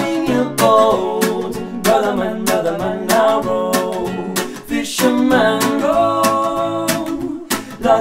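Acoustic guitar strummed in a steady rhythm while two men sing the song's melody.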